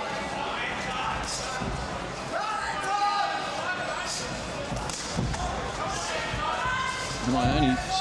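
Boxing-ring sounds: scattered dull thuds of the boxers' footwork on the canvas and gloved punches, under shouting voices from ringside.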